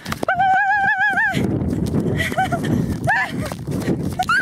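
A woman's high-pitched, wavering squeal held for about a second while she runs, then short laughing yelps. Under these is the rush of wind on the microphone and the jostle of running.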